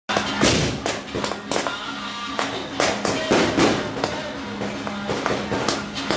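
Firecrackers going off in loose, irregular bangs, one or two a second, over procession music.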